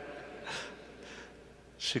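A man's breath drawn in on a close microphone, twice, a short one about half a second in and a fainter one a moment later, before he starts speaking again near the end.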